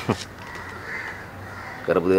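A quick falling swish at the start, then low, steady background, with a man's voice starting near the end.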